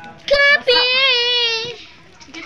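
A child's high voice singing, a short note followed by a longer held note that bends gently in pitch.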